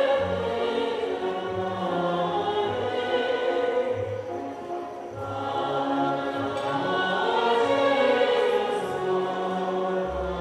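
Choir singing with a symphony orchestra in long, sustained chords. The music softens briefly about halfway through, then swells again.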